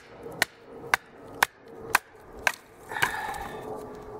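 A wooden baton knocking on the spine of a fixed-blade knife, driving it down through a small wet stick: six sharp strikes about two a second. This is followed about three seconds in by a longer rasping, crackling sound as the wood splits apart.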